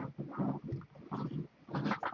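A man's voice mumbling indistinctly in short, low voiced sounds, without clear words.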